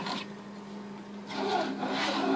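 A sharp click, then a scraping rub from about a second and a half in, over a steady low hum.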